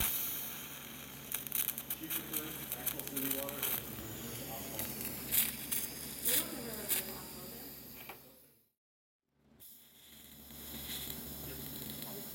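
TIG welding arc hissing and crackling as filler rod is fed into a joint on steel exhaust tubing, over a steady electrical hum. The sound cuts out for about a second near three-quarters of the way through, then the hiss returns.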